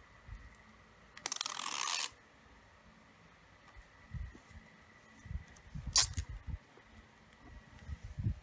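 Washi tape pulled off its roll, a tearing rasp lasting about a second, followed by soft knocks of hands handling tape on a paper planner and one sharp click about six seconds in.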